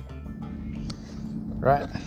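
A low, steady hum over faint background noise, with a short burst of a voice near the end.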